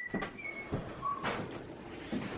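Faint clicks and taps of a child's plastic musical toy cube as its buttons are pressed, with a few brief, faint high tones.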